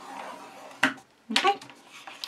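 A scoring tool drawn along a groove of a Scor-Pal scoring board, pressing a score line into card stock with a soft scrape, then a single sharp click a little under a second in.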